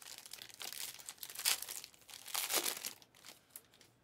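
Rustling and crinkling of trading cards and plastic packaging being handled. It is loudest about a second and a half and two and a half seconds in, then dies down to faint handling noise near the end.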